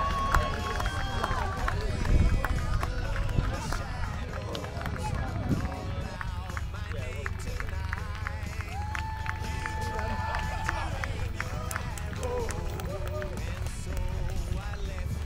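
Hoofbeats of several horses galloping over turf, with music over a public-address system playing two long held notes and indistinct voices behind. Wind rumbles on the microphone.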